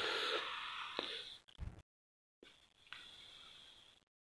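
Faint microphone hiss and room tone fading out after the talking stops. It cuts to dead silence twice, with a couple of faint clicks.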